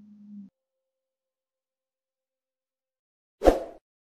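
A low steady hum ends about half a second in, then near silence. Near the end comes one short, loud whoosh, an editing sound effect marking the cut to an end screen.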